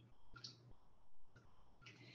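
Near silence, broken by a few faint, short clicks.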